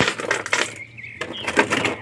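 Clear plastic wrapping crinkling and crackling as it is handled and pulled off small plastic action figures, with a brief lull about a second in.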